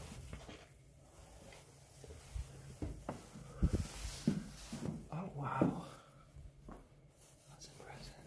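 Hushed whispering from a person, low and broken up, with a few soft thumps.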